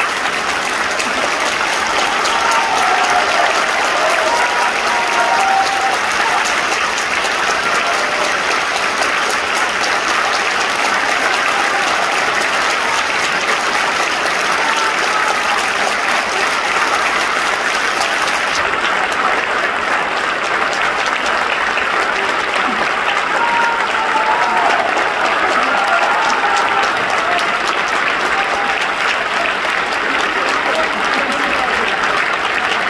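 Theatre audience applauding steadily in a sustained ovation after a male dancer's ballet solo.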